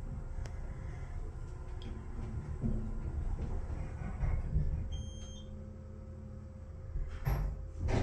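Passenger elevator car descending: a steady low hum of the car in motion, with a faint short beep about five seconds in. Near the end the car stops and the doors begin to slide open.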